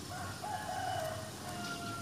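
A long animal call in two drawn-out notes: the first rises briefly then sags, the second is held level and a little lower.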